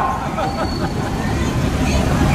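Busy street ambience: a steady low hum of road traffic under a murmur of voices from passers-by.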